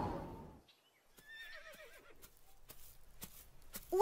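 A music cue fades out in the first half second. After a brief hush come faint horse sounds: a short whinny about a second and a half in, and scattered hoof clops.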